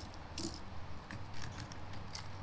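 Hard plastic topwater lures being handled and set down on a wooden table: a few light clicks and taps of plastic bodies and hooks, over a low steady background rumble.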